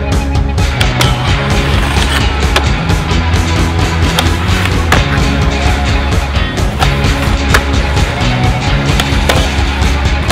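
Loud hard-rock music track with skateboard sounds mixed in: urethane wheels rolling on concrete and now and then a sharp clack of the board on a ledge or rail.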